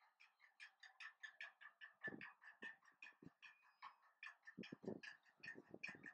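Faint, rapid, evenly repeated high calls from a bird, about five a second, with a few low thuds in the second half.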